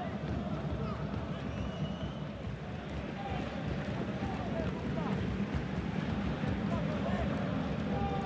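Football pitch ambience in an empty stadium: faint, distant shouts and calls of players over a steady low background hum.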